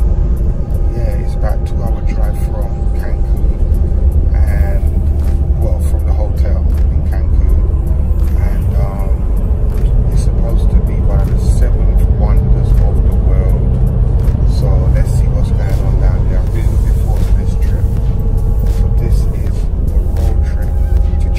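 A man talking over background music, with the steady low rumble of a moving coach's engine and road noise inside the cabin.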